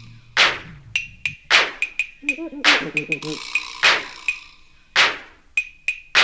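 Early-1980s electro hip hop in a sparse breakdown: drum-machine hits with long reverberant tails, about one every second, with light ticks between them. A brief chanted vocal ('can') comes in about three seconds in.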